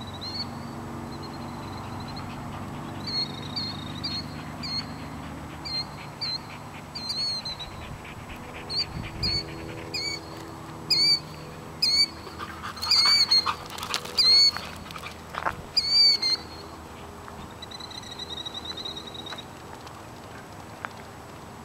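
Birds calling: a run of short, sharp, high calls that come thicker and louder around the middle, with a longer buzzy trill near the start and again near the end.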